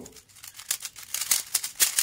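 A 3x3 Rubik's cube being turned quickly by hand: a rapid run of plastic clicks and rattles that starts about half a second in and gets louder after a second.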